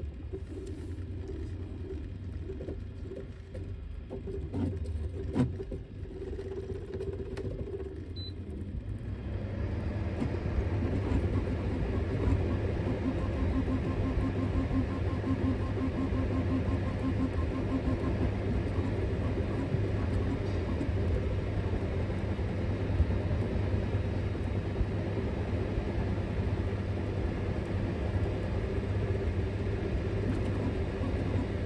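Ender 3 V2 3D printer running fast print moves at up to 400 mm/s: cooling fans humming under a mechanical whine from the stepper motors. The first seconds are quieter, with a few sharp clicks; about nine seconds in the motion sound swells and stays loud.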